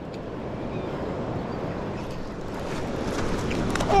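Steady rushing of a fast-flowing, rain-swollen river.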